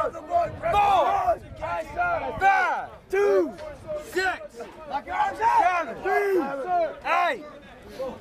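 Several men shouting in short, loud, overlapping yells, one after another: recruits and instructors bellowing pull-up counts and commands.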